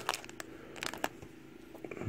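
Foil Pokémon card booster pack crinkling and crackling as it is handled, a scatter of small irregular clicks.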